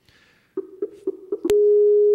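Skype call tones from a laptop: four short beeps, about four a second, then a click and one long steady tone, while a video call is being placed and has not yet connected.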